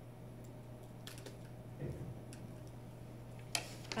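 A few faint clicks from a computer key or mouse, the sharpest one near the end as the slide is advanced, over a steady low electrical hum.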